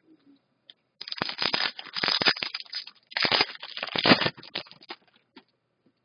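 Foil wrapper of a hockey card pack being torn open and crumpled, two spells of loud crinkling starting about a second in, then fading out near the end.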